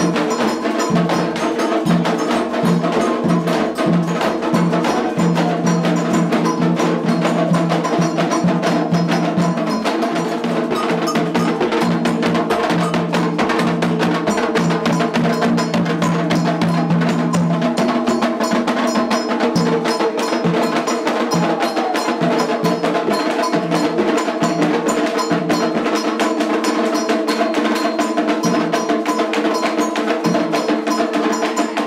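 Candomblé ceremonial music: metal bells ringing and struck in a fast, continuous rhythm with other percussion, without a break.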